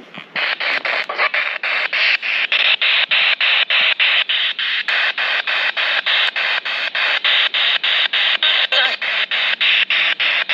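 P-SB7 Spirit Box sweeping the FM band: bursts of radio static chopped into short pieces several times a second as it hops from station to station, with brief fragments of broadcast sound.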